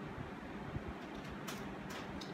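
Quiet room tone while a spoonful of frozen yogurt is tasted, with one brief click about one and a half seconds in.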